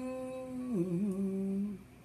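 A woman humming a drawn-out closed-mouth "mmm", holding one note and then stepping down to a lower one partway through, stopping shortly before the end.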